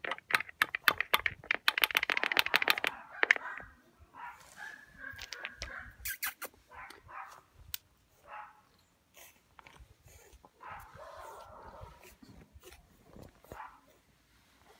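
Pug puppy making short whimpers and small yips, with a fast run of loud clicks and scrapes in the first few seconds and scattered clicks after.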